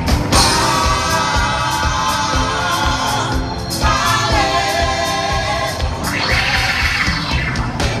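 Gospel vocal ensemble singing in close harmony with live band accompaniment and a steady beat, holding long chords with a short break between phrases just before four seconds in.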